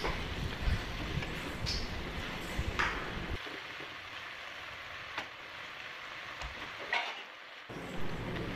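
Wooden spatula stirring chopped amaranth leaves in a steel pot on the stove, with the leaves rustling and a few light taps of the spatula on the pot. The stirring stops about three and a half seconds in, leaving a faint steady hiss and an occasional tap.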